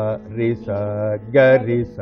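A man sings Carnatic swara syllables in short, steady notes, several in a row with one longer held note in the middle, over a continuous steady drone.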